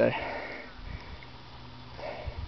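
A man's heavy breath through the nose, a short rush of air that fades within about half a second, then low background.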